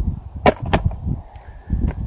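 Hard plastic golf discs clacking as one is swapped for another: two sharp clicks, one about half a second in and one near the end, over low thumps of handling.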